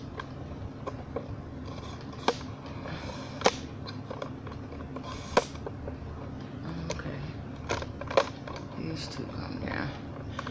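Handling noise of a phone camera being adjusted on its tripod: scattered sharp clicks and knocks, a few seconds apart, over a low steady hum.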